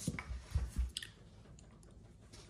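A few soft handling knocks and rustles as a plastic-wrapped electric unicycle battery pack is set down on a padded stand, with a small sharp click about a second in.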